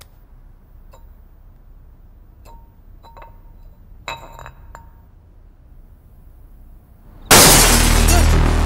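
Glass bottle on a tiled floor clinking faintly as a hand feels for it and picks it up, with a short ringing clink a little after four seconds in. Near the end, a sudden loud crash of glass breaking.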